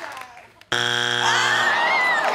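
Game-show wrong-answer buzzer: a harsh, steady buzz that cuts in suddenly about two-thirds of a second in and lasts just under a second, sounding a strike for an answer not on the board. A voice rising in pitch joins over its end.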